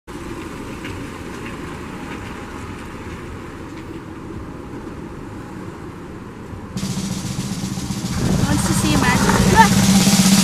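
A small SUV's engine running steadily as it pulls slowly through a paved alley. About two-thirds of the way in, rock music cuts in abruptly over it with a held low note and grows louder.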